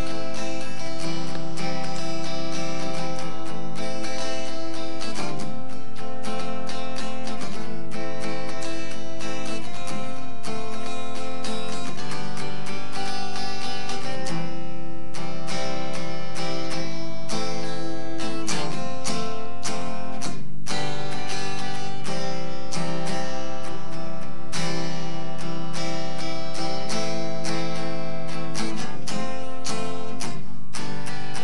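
Acoustic guitar strummed in a steady rhythm, cycling through the chords C, A minor, F (a barre chord) and G.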